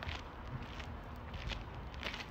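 Faint footsteps of someone walking, a few soft steps about half a second apart, over a low outdoor rumble.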